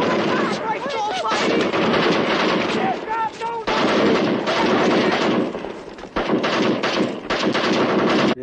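Rapid, sustained machine-gun fire from a film soundtrack, with men yelling over it.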